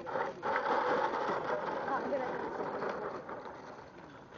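RC model plane landing close by and running out along the ground: a loud rush of noise that starts suddenly and fades over about three seconds as it slows.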